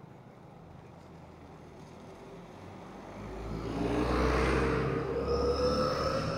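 A motor vehicle passing close by on the road, its sound building from about three seconds in to its loudest past the middle, with a slowly rising tone near the end.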